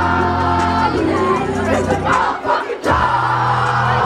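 Loud dance music playing over a party sound system, with a crowd of kids singing and shouting along. The bass cuts out for about half a second around two and a half seconds in, then comes back in.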